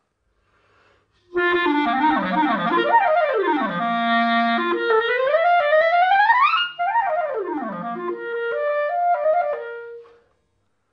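Clarinet played on a Vandoren Masters CL5 mouthpiece: fast scales and arpeggios sweeping up and down the instrument's range, starting about a second in, climbing to high notes past the middle and ending on a held note.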